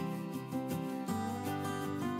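Background instrumental music led by a plucked acoustic guitar, moving to new notes about a second in.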